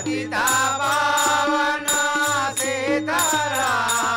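Telugu devotional folk song (tattvam) sung by male voices in bhajan style, a sung line over a steady held harmonium drone. Small hand cymbals (talam) keep a regular ringing beat, about one strike every three-quarters of a second.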